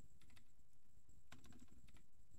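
Computer keyboard typing: a few faint separate keystrokes in two small groups, one near the start and one about a second and a half in.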